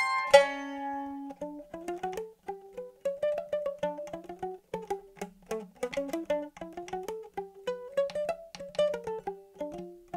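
Round-back mandolin played solo: a loud struck chord just after the start, then a quieter melody of single plucked notes.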